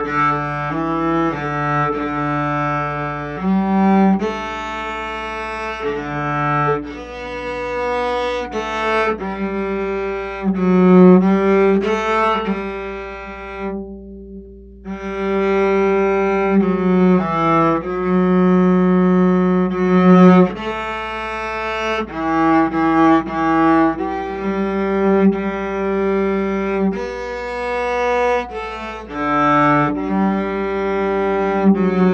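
Old Yamaha student acoustic cello bowed solo, playing a slow melody of sustained notes that change every second or two. The line breaks off for about a second halfway through, then resumes.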